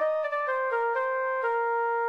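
Software synth flute lead (Purity plugin) playing a melody from the piano roll: a phrase of about five notes stepping down in pitch, the last one held.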